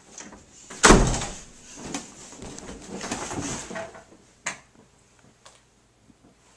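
An interior door shutting with a loud thud about a second in, followed by fainter rustling and two sharp clicks near the end.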